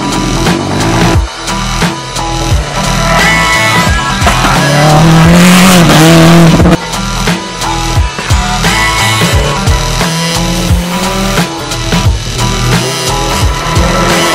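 Background music with a steady beat runs throughout, over a race car's engine and tyres on a dirt track. The engine rises in pitch and swells to its loudest about five to seven seconds in, with a rush of tyre noise.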